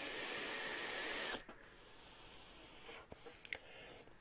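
A long draw on a brass tube vape mod: a steady airy hiss of air and vapor pulled through the atomizer, lasting about a second and a half before it cuts off. A few faint clicks follow near the end.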